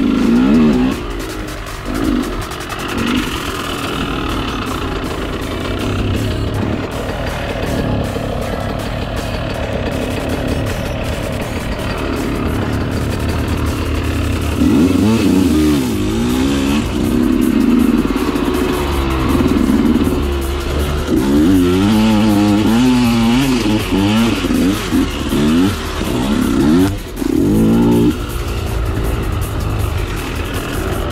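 2013 KTM 125 SX's single-cylinder two-stroke engine being ridden. It runs fairly steadily for the first half, then revs up and down repeatedly through the second half.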